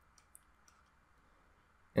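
A few faint, light clicks in the first second, against otherwise quiet room tone.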